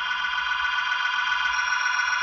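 A steady, held electronic tone sounding several high pitches together, unchanging throughout.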